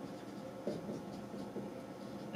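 Marker pen writing on a whiteboard: faint, irregular scratching strokes.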